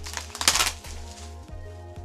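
Cardboard shipping box being pulled open by hand, with one short, loud rasping burst about half a second in and a few lighter cardboard knocks, over quiet background music.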